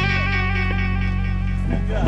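Italian ska-punk band playing live with electric guitars, bass and drums. One chord rings out sustained, and the next is struck at the very end.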